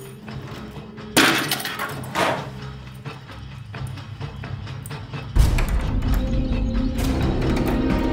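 Dramatic background score with a sustained low bed. Sharp knocks come about a second in and again about two seconds in, and the music swells louder and deeper at about five seconds.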